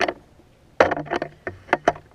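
Handling noise from a camera being picked up and moved: a sharp knock at the start, then a cluster of loud knocks and scrapes through the second half.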